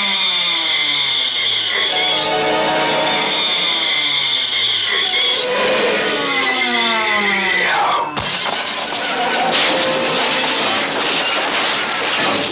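Cartoon sound effects: falling whistle-like glides and a held high tone, then a sudden loud crash about eight seconds in, followed by a noisy clatter.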